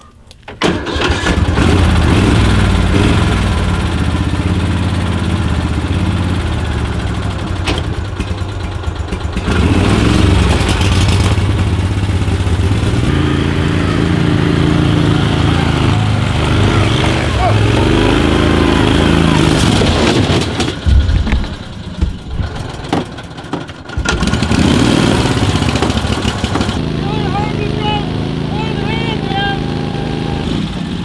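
Argo 8x8 amphibious ATV's engine starting up about half a second in, then running and revving as it drives off through deep snow, its pitch rising and falling in the middle. The sound drops and breaks off briefly about 21 seconds in before it runs steadily again.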